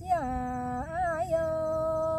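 A singer in a Black Tai (Thái) folk courtship song drawing out a syllable: the voice slides down onto a held note, wavers up and back about a second in, then settles on a long steady note.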